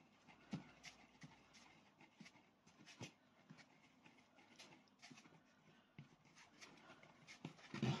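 Faint rubbing and soft, irregular knocks of a soft clay ball being rolled around inside a wooden bowl, to smooth and round it.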